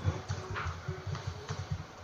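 Computer keyboard typing: irregular keystrokes and clicks, several a second.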